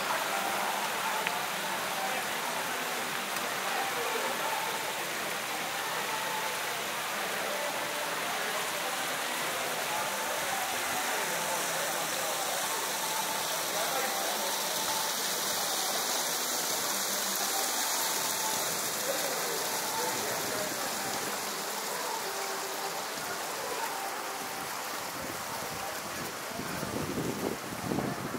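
Outdoor fountain water splashing in a steady hiss, with faint voices of people in the background.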